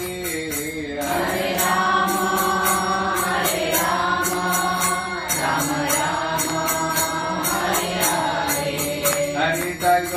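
A man's voice singing a devotional chant with long, drawn-out notes, accompanied by a steady beat of jingling metal percussion.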